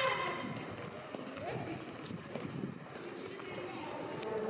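Indistinct chatter of a tour group, with a few scattered sharp clicks.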